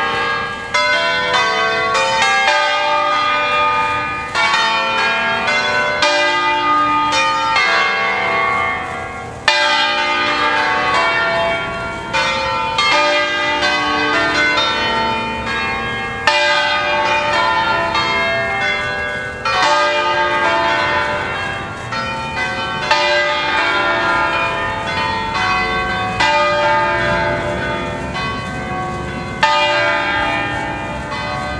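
A ring of six church bells in E-flat, cast by the Ottolina foundry, swinging on their wheels and ringing together in a full peal (distesa), the festive call to Sunday Mass. Strikes of many pitches overlap continuously, with no pause.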